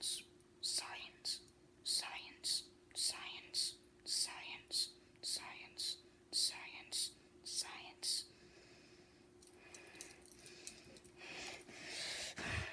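A person whispering in quick, regular hissy bursts, about two a second, for roughly the first eight seconds, then going quiet. A faint steady hum runs underneath.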